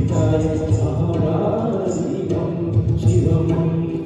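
Male vocalist singing live into a microphone over a PA, accompanied by keyboard and tabla.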